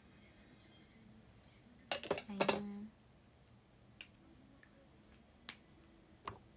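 A quick cluster of sharp clicks about two seconds in, ending in a short low hum. Single light clicks follow near four and five and a half seconds.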